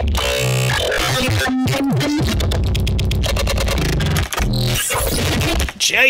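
A mangled scream sample played back after Melodyne has split it into many separate pitched notes: a dense, distorted jumble of tones jumping abruptly from pitch to pitch over a heavy bass, with two brief dropouts, cutting off just before the end.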